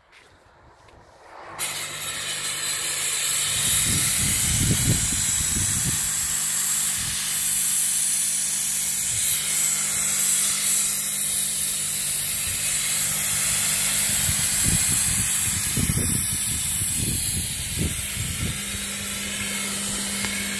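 A 5000 W industrial smoke machine in a flight case firing fog: a loud, steady hiss that starts suddenly about a second and a half in and runs on without a break, with a low hum underneath.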